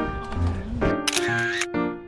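Background music with a camera-shutter sound effect, a short burst about a second in.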